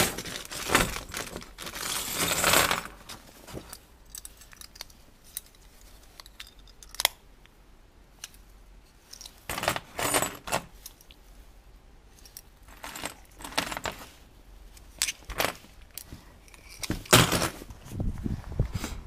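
A handful of small metal rings clinking and jingling against each other as they are tipped out of a plastic bag and sorted by hand. The sound comes in irregular bursts of clicks with quiet gaps between them.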